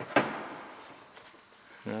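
A single sharp plastic click as the removed tail light housing is handled, followed by fainter rubbing and a brief high squeak of plastic.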